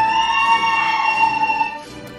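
A long, high-pitched cheer from someone in the audience that rises at the start, then holds steady for about two seconds before fading near the end.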